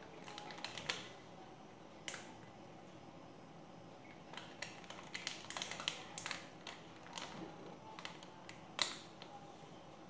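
Scattered light clicks and crackles of a plastic instant-noodle packet being handled and shaken over a plastic bowl, coming in irregular clusters, with one sharper click near the end.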